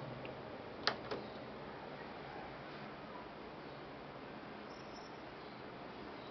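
A small button clicking twice in quick succession about a second in, a press and release, as the computer is shut down. The rest is a faint steady background hiss.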